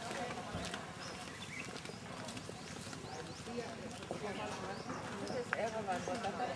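Indistinct voices of people talking at a distance, growing a little louder near the end, with many short high chirps sounding over them throughout.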